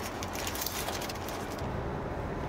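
Steady low hum inside a Kia K5's cabin, with no single event standing out; the higher hiss thins out near the end.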